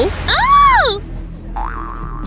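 A comic 'boing'-style sound effect: a smooth pitched glide that rises and falls over well under a second. About a second and a half in, a second tone rises and then holds steady. Background music runs underneath.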